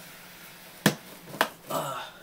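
Two sharp clacks about half a second apart, the first the louder, as hard objects are knocked together while being moved around, then a brief softer scuffle near the end.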